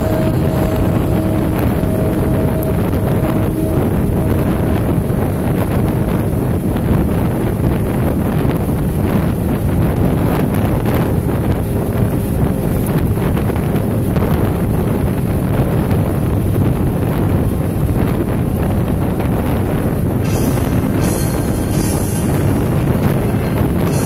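Motorcycle cruising at highway speed: a steady rush of wind on the microphone over the engine's drone and road noise.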